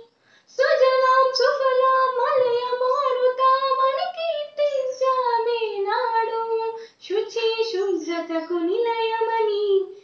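A girl singing a patriotic song solo and unaccompanied, in long held notes that glide between pitches. She breaks for breath about half a second in and again about seven seconds in.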